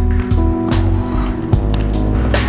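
Music with a steady beat, about two and a half beats a second, over held notes and deep bass.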